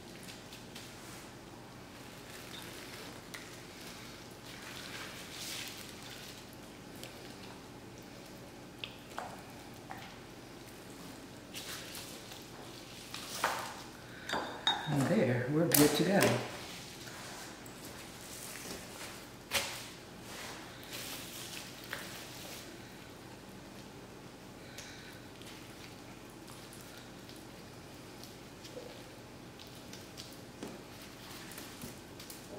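Soft handling sounds of raw chicken being basted with oil, with a few sharp clinks of the basting brush against the glass measuring cup around the middle. A short murmur of voice comes about halfway through and is the loudest sound.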